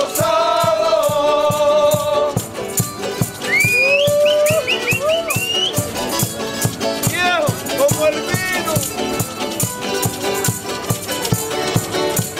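Canarian folk group playing: strummed guitars and timples with a steady shaken-rattle beat, and voices singing a held note at first. Later come high gliding calls from voices over the music.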